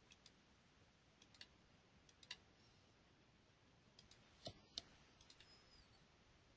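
Faint computer mouse-button clicks, scattered singly and in quick pairs, as nerve points are picked one by one; the loudest pair comes about four and a half seconds in.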